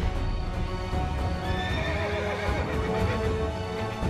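A horse whinnies about two seconds in, over dramatic background score music.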